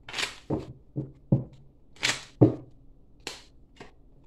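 A tarot deck being handled and shuffled: a string of short papery swishes and soft taps of the cards, about eight in all, the loudest tap about two and a half seconds in.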